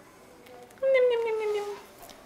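A single high-pitched vocal call, about a second long, starting just under a second in and sliding slowly down in pitch as it fades.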